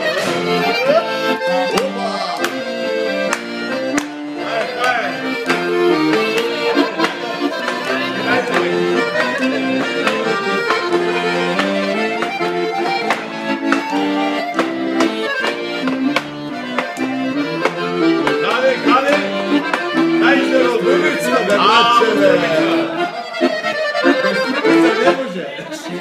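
Guerrini piano accordion playing a traditional folk tune, with hand clapping along to the beat.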